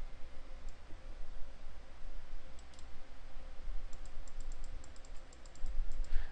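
Faint computer mouse clicks, a few at first and then a quicker run of about five a second in the second half, over a low steady background rumble.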